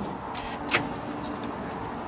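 Handling noise from a handheld recording device being propped up on a makeshift stand: a low rustle and hiss with one sharp knock about three quarters of a second in.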